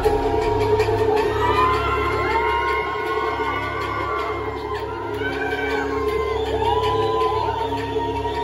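Live band playing an intro of sustained synthesizer and keyboard chords over a low drone, with no beat. Crowd whoops and cheers, gliding up and down in pitch, rise over it.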